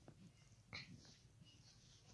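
Near silence: room tone, with one faint brief sound about three quarters of a second in.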